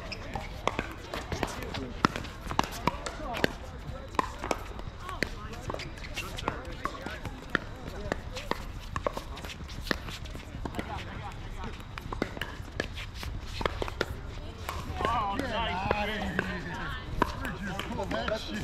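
Pickleball rally: irregular sharp pops of paddles hitting the plastic ball, with ball bounces on the hard court. Voices talk near the end.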